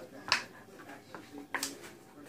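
Hands handling a plastic package of sliced ham, giving two short, sharp crackles a little over a second apart.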